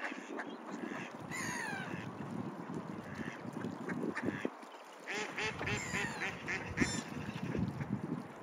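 Mallard ducks calling on the water, with a falling call early on and a quick run of quacks in the second half.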